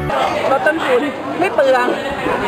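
Speech only: a woman talking.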